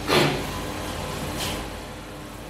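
A short, loud breath hiss into the microphone just after the start, falling in pitch, and a fainter one about a second and a half in, over a steady low room hum.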